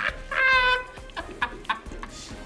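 People laughing hard: one high-pitched squealing laugh about half a second in, followed by several short bursts of laughter.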